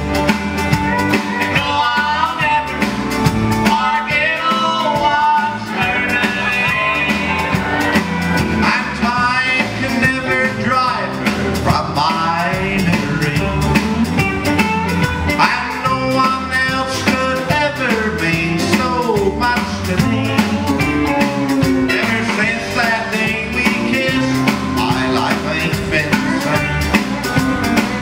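A live country band playing an uptempo song: drums, electric bass, acoustic and electric guitars and steel guitar, all going steadily.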